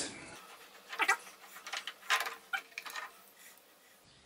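Faint, scattered knocks and clinks of steel parts being handled as a four-jaw chuck and its back plate are taken apart, several light strikes between about one and three seconds in.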